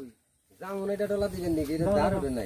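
People talking, their voices breaking off into a half-second of dead silence near the start and resuming.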